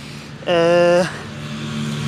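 A motor vehicle's engine running nearby, a steady low drone that grows louder through the second half. About half a second in comes a brief held vocal hum, the loudest sound.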